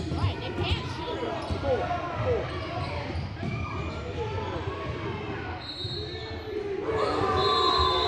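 Indoor basketball game: a ball bouncing on a hardwood court and sneakers squeaking, with spectators talking. Near the end a steady shrill tone sounds twice, typical of a referee's whistle.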